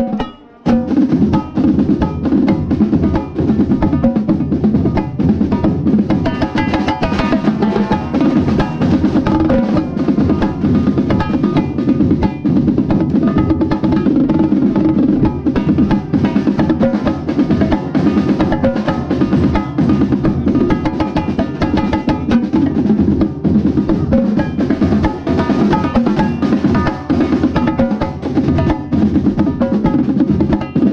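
Marching tenor drums played fast and loud from right beside the drums, with the rest of the drumline drumming along. There is a brief drop just after the start, then dense, unbroken drumming.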